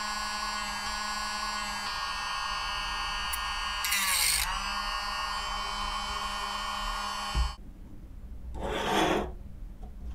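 A small hand-held rotary tool with a thin cutting disc runs with a steady whine; about four seconds in the disc bites into the black lens tube with a brief rasping burst and the motor's pitch dips under the load. The tool switches off with a click a little past seven seconds, and a short scraping rub follows near the end.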